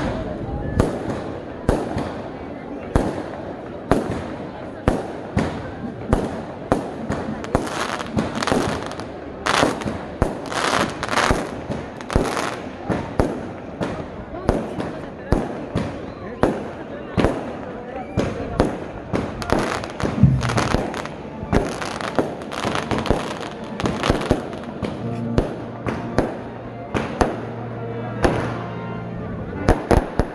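Firecrackers going off in a long, irregular string of sharp bangs, two or three a second, with crowd voices underneath.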